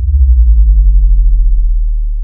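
A loud, deep sub-bass transition effect: a low hum with an overtone that slides down in pitch, swelling early on and then slowly fading.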